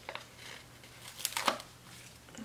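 Paper sticker sheet being handled and worked with the hands: a few short crisp paper sounds, the loudest about one and a half seconds in.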